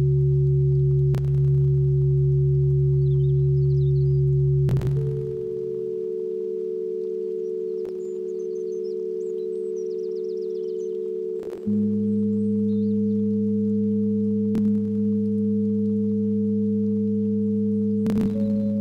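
Ambient music of sustained, bell-like synthesizer drone chords that shift to a new chord about five seconds in and again near twelve seconds in. A soft click comes roughly every three seconds, with faint high chirps above.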